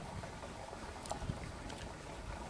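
Wind rumbling on the microphone over faint outdoor background noise, with a few faint clicks about a second in.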